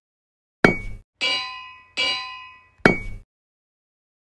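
Four metallic clangs on a silent background: a short sharp hit, then two longer ringing clangs whose bright, many-toned ring dies away, then another short hit near the end, laid in as a sound effect.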